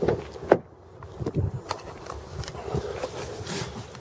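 A car door being opened and a person getting into the driver's seat of a 2013 Dodge Dart: a few sharp clicks and knocks, the loudest about half a second in, then scattered softer knocks and rustling.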